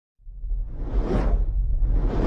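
Logo-intro sound effect: a deep rumble comes in just after the start, with a whoosh that swells up and fades about a second in.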